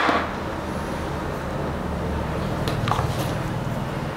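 A steady low background hum, with a couple of light clicks about three seconds in as a strap is worked onto a smartwatch case.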